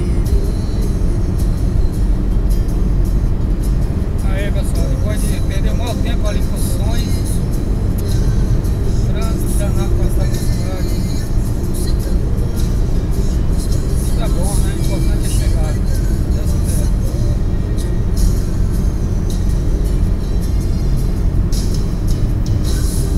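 Loud, steady road and wind noise inside a car's cabin cruising at about 150 km/h, heavy in the low end. Faint voices and music sit under it, mostly from about 4 to 16 seconds in.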